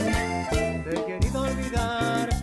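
Live band music over a PA: an accordion melody over bass and a steady drum beat.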